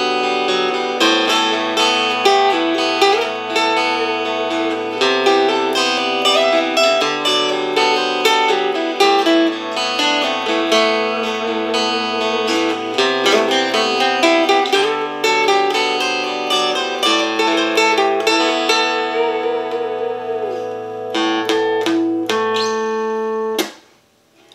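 Mogabi 200 Smart Guitar, a foldable travel acoustic-electric guitar, playing a recorded backing part back through its built-in speaker while simple melodies are picked live over it. Held low notes change about every two seconds under quicker plucked notes, and the playing cuts off just before the end.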